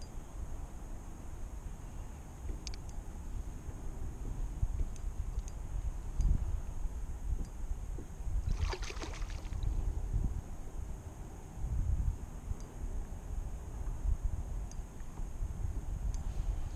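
Wind buffeting the microphone in an uneven low rumble, with water lapping against a kayak hull, and a brief rasping burst about nine seconds in.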